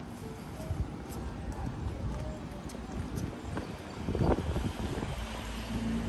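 Footsteps of someone walking on a paved shopping street, amid street ambience with faint voices of passers-by. A louder clatter comes about four seconds in, and a low steady hum begins near the end.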